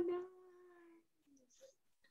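A person's voice drawing out the end of a spoken "nice" in one long level tone that fades out about a second in, then near silence.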